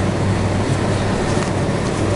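Steady background hiss with a low, even hum, like a fan or air-conditioning unit running.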